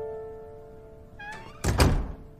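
Soft piano notes of background music ring out, then a brief squeak and a heavy wooden door shutting with a loud thud near the end.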